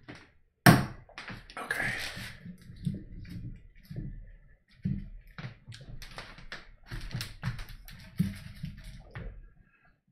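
Handling noise as the camera is moved: a sharp click about a second in, then irregular taps, clicks and low thuds that stop just before the end.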